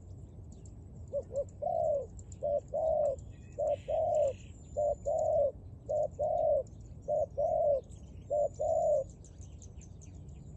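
Spotted dove cooing: seven low two-note phrases, each a short coo followed by a longer one, repeated steadily about every second and a bit from about a second in until near the end.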